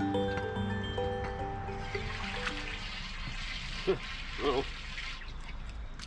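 Background music fades out over the first two seconds. Then rainwater from a puddle trickles and pours down an open dump-station drain. A brief vocal sound comes about four seconds in.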